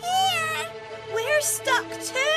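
Cartoon cat meowing a few short times over background music.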